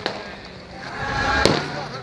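Two sharp firecracker bangs about a second and a half apart, each with a short echo, over the chatter of a crowd on foot.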